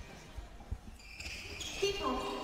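Faint basketball court sound at tip-off: a few dull thuds of the ball and players' feet on the hardwood floor, then high squeaks from about a second in.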